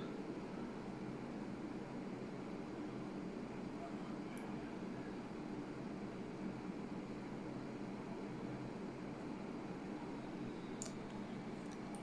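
Steady low room hum with no voice, and two faint ticks, one about four seconds in and one near the end.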